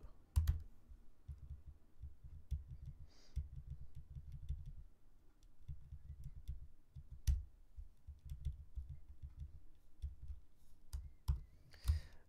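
Computer keyboard typing: an uneven run of keystrokes with a few short pauses.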